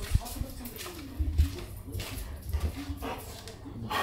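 A pet dog whining and barking, with a few dull low thumps.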